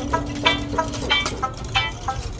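Background music with a steady beat, about three beats every two seconds.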